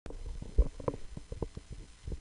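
A run of low, irregular knocks and bumps, the strongest a little over half a second in.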